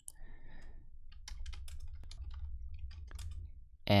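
Typing on a computer keyboard: irregular key clicks over a low steady hum.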